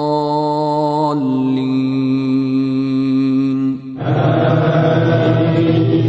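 Chanted Quranic recitation in long held notes: a voice holds one pitch for about a second, then a lower pitch for over two seconds. After a short break about four seconds in, a fuller, louder chanting voice takes over.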